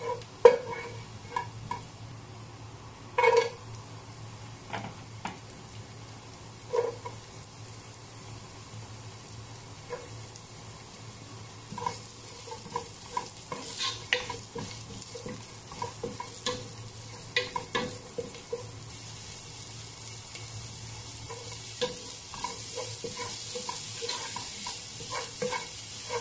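Garlic and sliced onion sizzling in olive oil in a pot, stirred with a wooden spoon that knocks and scrapes against the pan now and then. The sizzle grows louder over the last several seconds.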